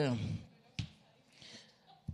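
The tail of a man's drawn-out hesitation sound, 'é', fades out in the first half-second. A single short knock follows a little under a second in, with only faint room sound after it.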